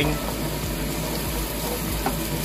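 Chopped onion and garlic sizzling steadily in hot oil in a nonstick wok as a wooden spoon stirs them.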